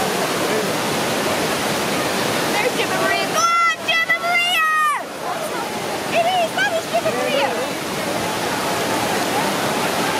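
Whitewater pouring over a river weir, a steady rush throughout. Over it, high-pitched shouting voices rise from about three seconds in to about five seconds, with more calls around six to seven seconds.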